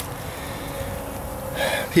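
Faint, steady buzzing of honeybees flying around a homemade pollen feeder, heard under outdoor background noise. A short vocal sound comes just before the end.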